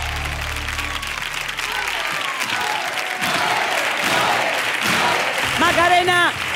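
Studio audience applauding and cheering at the end of a sevillanas song, the band's last chord dying away in the first second or two.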